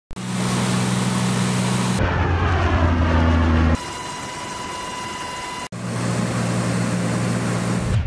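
Aircraft engine and propeller noise in short spliced clips. A steady low drone changes abruptly about two seconds in and again near four seconds, where a quieter stretch carries a high steady whine; the low drone returns near six seconds.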